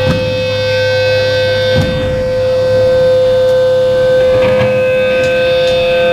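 Electric guitar feedback through a guitar amp: one steady, unwavering high tone held on, with a low amp hum beneath it that stops about two seconds in.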